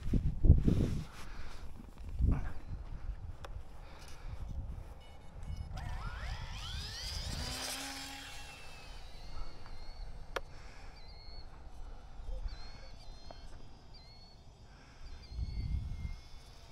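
Small electric motors of a micro RC twin-engine plane, a UMX Twin Otter, whining up in pitch for about two seconds, some six seconds in, as it throttles up and takes off. The motor is faint and the plane is really quiet, under low wind rumble on the microphone; faint short high chirps repeat later on.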